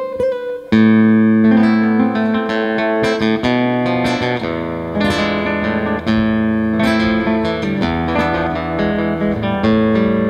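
Godin Multiac Nylon SA nylon-string electro-acoustic guitar played fingerstyle. A few quick repeated single notes give way, under a second in, to a loud chord and then a flowing passage of chords and melody notes.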